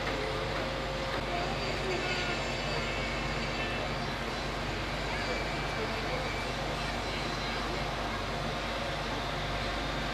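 Diesel engine of a lorry-mounted crane truck running steadily, driving the crane's hydraulics as it lowers a load.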